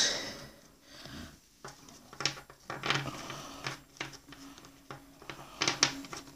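Panini Prizm football cards being handled by hand, flipped through and set down on a wooden table: a few light, scattered clicks and snaps of card against card and tabletop.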